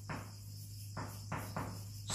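Marker writing on a whiteboard: a few short, faint strokes over a steady low hum and a faint high-pitched whine.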